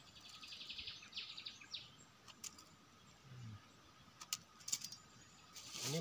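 Faint outdoor ambience: a bird chirping in a high, rapid trill through the first couple of seconds, then a few sharp clicks and rustles of hands at work in dry leaf litter.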